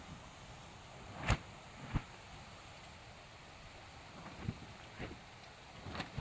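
Quiet outdoor background with four short sharp knocks, the loudest just over a second in and another just before two seconds, two more near the end.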